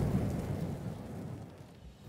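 The dying tail of a deep, boom-like sound effect: a dense rushing noise that fades steadily away over the two seconds.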